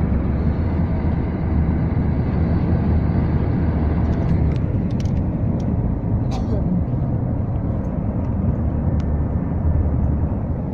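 Road and engine noise inside a moving car's cabin, a steady low rumble. A few light clicks come about halfway through, and one more near the end.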